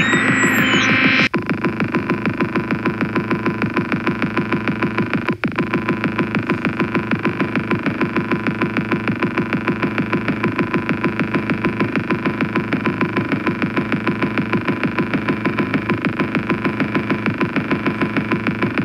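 Electronic music from iPad synth apps. A gliding optical-synthesizer texture (ANS3) cuts off suddenly about a second in. It gives way to a dense, fast, evenly pulsing synth and drum-machine loop, with a brief dropout about five seconds in.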